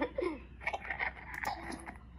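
Faint voice sounds from a dubbed animated film's soundtrack playing through laptop speakers, with a few sharp clicks a little past halfway.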